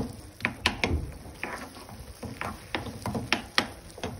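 Wooden spoon stirring thick, stringy melted-cheese mıhlama in a nonstick pan, with irregular sharp clicks and knocks as the spoon strikes the pan.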